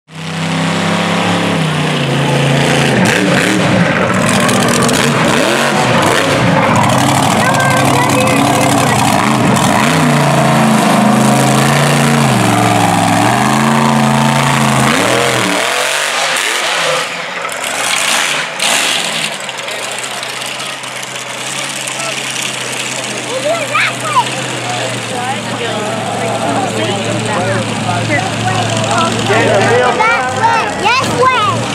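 Mud truck engine revving hard, its pitch climbing and dropping again and again. About halfway through the sound changes abruptly to a lower, steadier engine note, with voices over it near the end.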